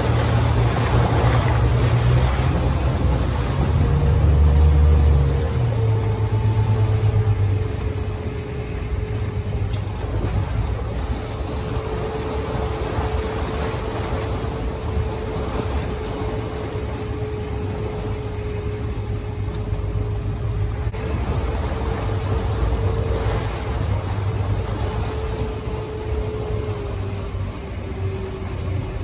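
Motorboat engine running at speed with a steady whine, over the rush of its churning wake and wind buffeting the microphone. It is loudest for the first several seconds, then eases a little.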